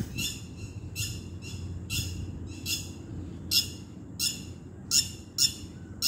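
A bird calling over and over in short, harsh high notes, about one every 0.7 seconds, the calls getting louder in the second half. A low steady rumble lies underneath.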